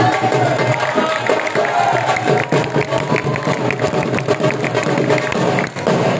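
Saraiki jhumar folk music: a dhol drum beating a steady rhythm under a been reed pipe playing a bending melody.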